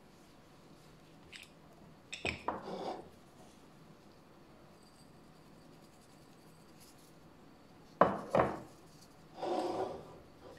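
Glass jars being handled and set down on a stone countertop: a few clinks about two seconds in, then two sharp knocks about eight seconds in, the loudest sounds here. Short rustling handling noise follows the clinks and the knocks.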